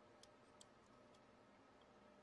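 Near silence: faint room tone with a few very faint, short ticks in the first second or so.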